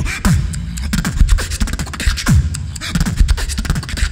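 Solo beatboxing with the hand cupped around a microphone: a fast, dense beat of deep kick drums that drop in pitch, sharp snares and quick hi-hat clicks.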